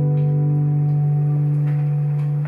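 Music: the song's closing chord on acoustic guitar, held as one steady, unchanging ringing tone.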